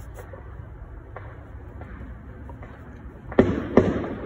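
Steady low background rumble, then two sharp bangs about half a second apart near the end.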